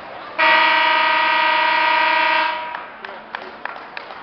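Gym scoreboard timing horn sounding a single steady blast of about two seconds, signalling that wrestling time has run out, then a few light knocks.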